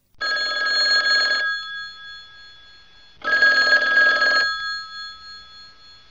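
Telephone ringing twice for an incoming call. Each ring lasts a little over a second, and the second comes about three seconds after the first. A faint ringing tone lingers after each ring.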